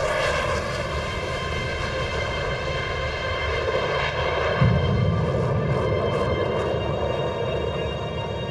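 F-16 fighter jet taking off from a highway strip on afterburner: a steady, enormous jet roar with a high whine running through it. A deeper rumble swells about halfway through as the jet climbs away.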